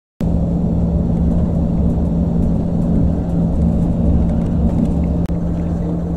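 Steady low engine and road rumble with a constant hum, heard from inside a moving vehicle. It starts abruptly just after the beginning and drops out for an instant about five seconds in.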